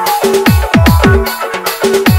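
Purulia DJ dance remix: heavy electronic bass drums, each dropping sharply in pitch, hit in a fast, dense pattern under short synth notes.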